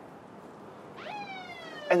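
A police siren: a single wail that rises sharply about a second in, then slowly falls in pitch.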